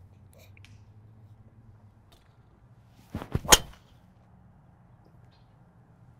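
A PING G430 Max driver striking a golf ball off the tee: one sharp crack of clubface on ball about three and a half seconds in, with a shorter, softer noise just before it.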